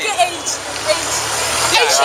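Street traffic: a road vehicle's engine gives a low steady rumble through most of the stretch, under brief snatches of conversation.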